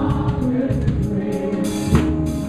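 Live worship band playing with voices singing: electric guitars, keyboard and drum kit keeping a steady beat, with a cymbal wash ringing out near the end.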